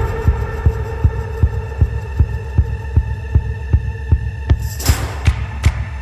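Instrumental break of trailer-style music: a held synth drone over a steady low pulse of about two and a half beats a second. About five seconds in, a hissing swell rises and the beats turn into sharp, bright clicks.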